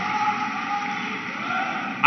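A pause in a speech over a public-address system: the steady, echoing background noise of a large crowd gathered under a canopy, with no clear single event.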